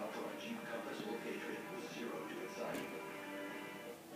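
A television playing in the room: indistinct voices over background music.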